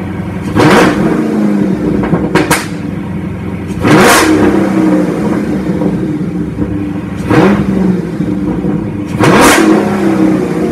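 2015 Dodge Challenger Scat Pack's 6.4-litre HEMI V8 with a mid-muffler delete, idling and revved five times in short blips, each climbing and falling straight back to idle; the second blip is the briefest.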